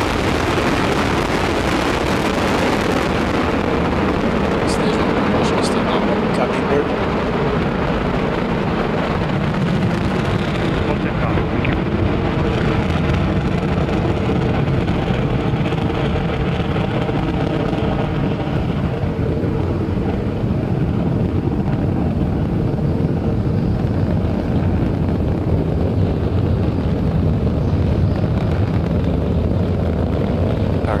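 Falcon 9 first stage's nine Merlin engines burning during ascent: a loud, steady rumbling rush of noise. The high hiss drops away after about three seconds, and the sound grows duller as the rocket climbs away.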